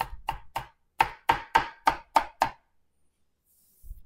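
Chef's knife mincing onion on a cutting board: about ten quick, sharp knocks at roughly four a second, each with a short ring, stopping about two and a half seconds in.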